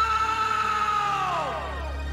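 A man's long drawn-out yell, held on one pitch and then sliding down and fading out near the end, over a music soundtrack.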